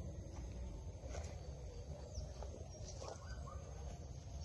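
Quiet outdoor ambience: a few faint bird chirps over a low rumble.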